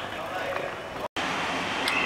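Steady background noise with no distinct source. It cuts out completely for an instant about a second in, at an edit, and there is a short click near the end.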